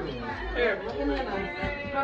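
Voices talking over one another: chatter of several people, with a short spoken "hey" about half a second in.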